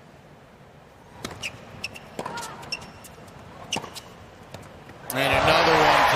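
Tennis serve and short rally: sharp pops of racket strings hitting the ball, about half a dozen over three seconds, over a low crowd murmur. Near the end the crowd bursts into loud cheering and applause as the point ends.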